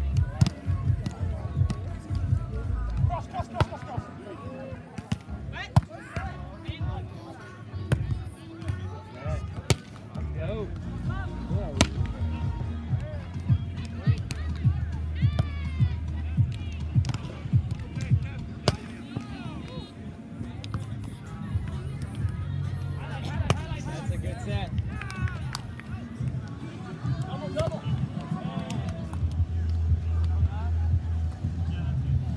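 Volleyball rally on grass: sharp slaps of hands striking the ball every few seconds, over players' shouts and background music with a heavy bass.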